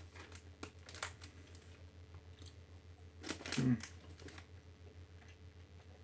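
Faint scattered clicks and crinkles of someone chewing gummy candy and handling the candy and its packaging. About three and a half seconds in there is a short closed-mouth "hmm".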